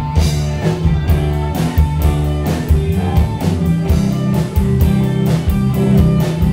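Live rock band playing: electric guitar and bass guitar over a drum kit, with a steady beat of cymbal strikes several times a second.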